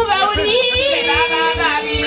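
Women's choir singing into microphones over a steady low beat of about three thumps a second.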